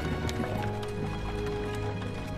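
Background music from the drama's soundtrack song: sustained, held notes with light clicking percussion.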